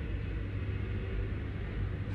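Steady low hum with a faint even hiss of background noise, no distinct events.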